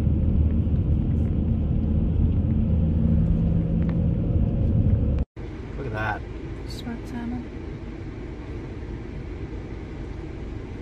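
Road and engine noise inside the cabin of a moving Ford Escape SUV, a steady low drone with hum. It cuts off abruptly about five seconds in and gives way to a quieter steady noise with a few brief sounds.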